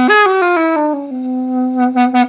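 Homemade carrot clarinet, a drilled carrot played through an alto saxophone mouthpiece with a dry reed, sounding a reedy tone: it jumps up, steps quickly down a run of notes in the first second, then holds a long low note. It plays even though the reed is dry.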